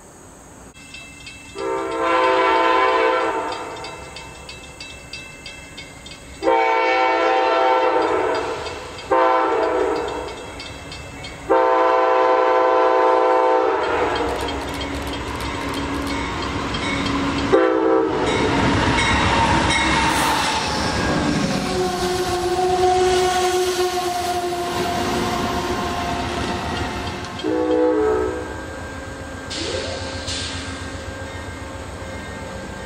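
Amtrak P42DC diesel locomotive sounding its horn as it approaches, in a long, long, short, long pattern, then a short blast. The train then runs past with a heavy rumble of engine and wheels clacking over the rails, and gives another short horn blast near the end.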